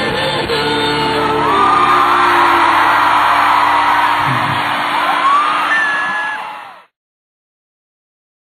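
Live rock band holding a final sustained chord at the end of a song, with whoops and yells over it. The sound fades out quickly about seven seconds in.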